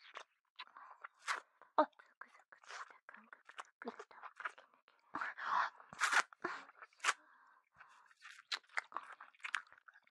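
Close-miked ASMR mouth sounds: wet licking, sucking and lip smacks coming irregularly, with soft breaths between them.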